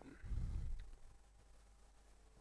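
A brief low, muffled rumble lasting about half a second, soon after the start, over a faint steady room hum.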